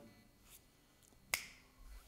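Quiet room tone broken by one sharp click about a second and a half in.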